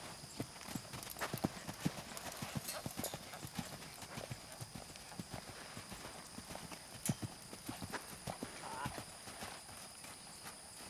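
Hoofbeats of a heavy, big-footed horse cantering on a sand arena: an uneven run of dull thuds, some louder than others.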